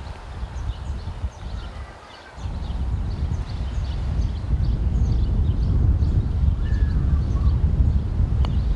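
Wind buffeting the microphone in a low rumble that eases briefly about two seconds in, then picks up again. Small birds chirp faintly and repeatedly in the background.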